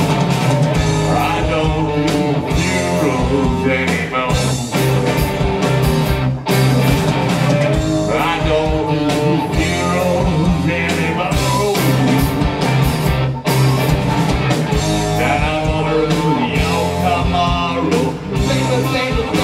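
Live rock band playing: distorted electric guitars and drums, with a man singing lead into the microphone.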